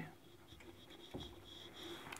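Faint rubbing of a handheld whiteboard eraser wiping marker writing off a whiteboard.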